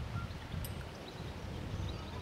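Faint outdoor ambience: a low, uneven rumble with a couple of faint, brief bird chirps.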